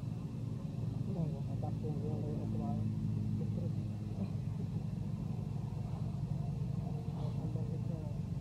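A steady low rumble with people's voices talking faintly over it, most clearly between about one and three seconds in.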